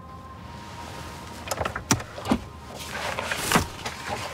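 Inside a parked car: sharp clicks and knocks from a car door being worked, then a rush of noise as it swings open, over a steady low hum.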